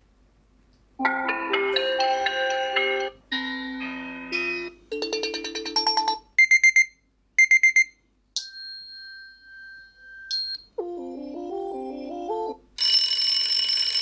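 A run of Amazon Alexa preset alarm tones previewed one after another, each cut short as the next is chosen. There are several short chime melodies, two quick bursts of rapid high beeping, and two held steady tones. Near the end a dense bright ringing tone starts.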